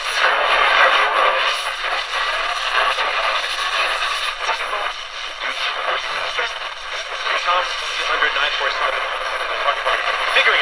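A GE 7-2001 Thinline portable radio's small speaker plays AM band reception: steady static with a weak broadcast voice in it.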